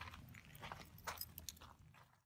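Faint, scattered clicks and small rattles of a set of keys being handled at the trailer door's lock just after it has been locked.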